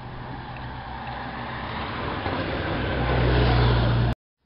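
Race escort motorcycle's engine approaching behind a group of road-racing cyclists, a steady low engine hum growing louder and loudest near the end as it nears.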